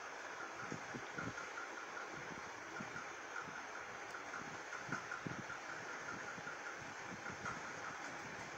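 Steady background noise with irregular soft low thumps and a faint, broken high whine.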